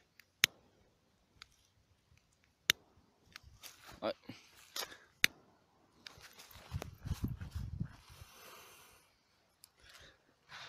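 A few sharp clicks, then a small paper-wrapped charge of flash powder flaring up and burning with a low rushing sound that thins into a faint hiss. It burns slowly for flash powder and does not explode.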